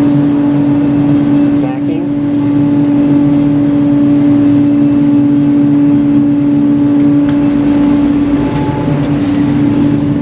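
A loud, steady machine hum with one strong held tone, dipping slightly about two seconds in.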